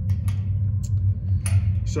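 Steady low hum with a few short sharp metallic clicks as a quarter-turn ball valve on a CO2 refrigeration rack is handled and turned open.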